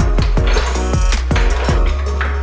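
Background electronic music with a heavy bass line and a fast, steady drum beat.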